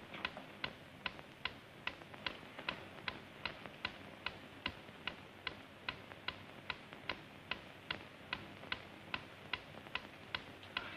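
A clock ticking steadily, about two and a half ticks a second.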